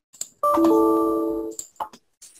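Windows 10 system alert chime: a short ding of two descending notes that rings out for about a second.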